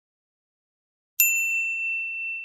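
A logo chime sound effect: silence, then about a second in a single high ding that rings on and slowly fades.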